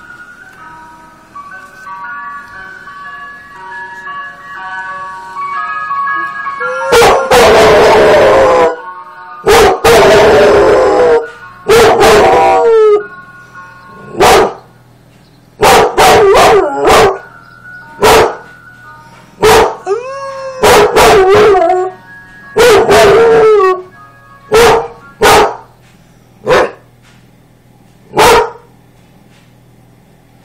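An ice cream van's chime tune grows louder over the first several seconds. Then a dog howls loudly, three long howls followed by a string of shorter howls and barks.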